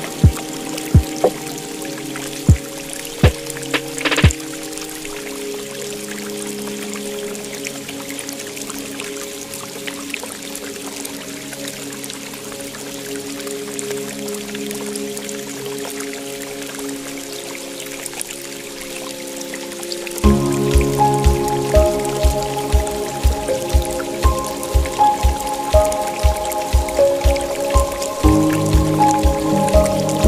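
Calm instrumental music of long held notes over a steady sound of pouring water. About twenty seconds in, a low regular pulse of about two beats a second and a brighter run of notes come in.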